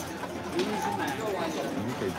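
Indistinct background chatter of several voices, with a single sharp click right at the start.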